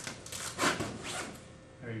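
A few short rustling scrapes of clothing and bodies moving against each other and the floor mat, as a kneeling officer grabs the raised arm of a man lying face down.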